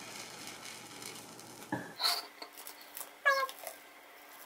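A dried peel-off gel mask being pulled off facial skin: faint soft crackles, a few short ones about two seconds in. A little after three seconds comes a short high-pitched squeal-like vocal sound.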